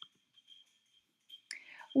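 Near silence with a faint steady high-pitched tone, a tiny click at the start, then a breath and a woman's voice beginning to speak near the end.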